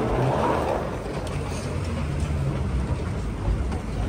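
A steady low rumble, as inside a moving vehicle, with a louder rushing noise in the first second.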